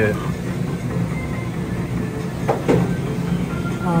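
Steady low electronic hum and faint beeping tones from arcade game machines, with a brief voice sound about two and a half seconds in.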